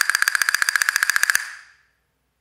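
Wooden handle castanets played in a fast single-stroke roll against the leg: a rapid, even stream of bright clicks with a ringing pitch, dying away about one and a half seconds in.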